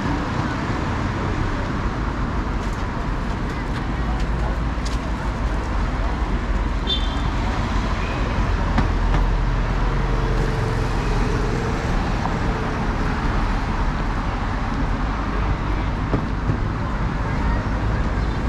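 Steady city road traffic: cars driving past on the street alongside, a continuous low rumble that grows louder for a few seconds in the middle as vehicles pass close by.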